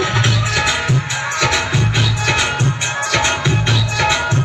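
Loud dance music with a steady drum beat and deep bass, about two beats a second.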